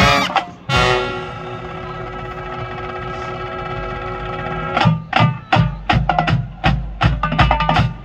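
Marching band playing live: after a loud hit, the horns hold one long chord for about four seconds. Near the middle the drumline takes over with a quick run of sharp drum strokes, several a second, with bass drum hits underneath.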